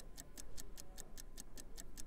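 Countdown-timer ticking sound effect: quick, even ticks at about five a second, over a faint steady tone.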